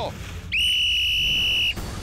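A sports whistle blown in one steady blast of about a second, starting about half a second in and cutting off cleanly: the starting signal for a race after a countdown.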